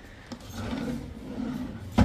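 Drawer of a wooden desk being handled by its knob: a faint click, a low rubbing, then a sharp knock at the very end.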